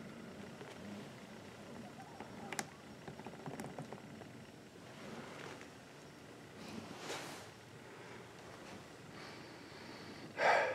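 Faint sounds of used engine oil being dumped from an upended spin-on oil filter into a plastic drain pan, with rag rustling and a small click about two and a half seconds in. A soft swell of rustling comes around seven seconds.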